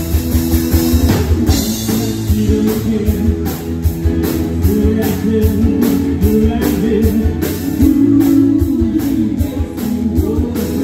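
Live band playing a rock-style song: a drum kit keeps a steady beat under guitar, with women singing into microphones.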